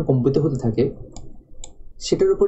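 A man's voice speaking for about the first second, then a few light clicks in the quieter second half.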